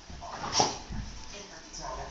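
Dog giving one short, sharp vocal sound about half a second in, amid its excited play.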